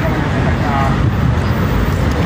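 Steady low rumble of road traffic on a city street, with a brief spoken word just under a second in.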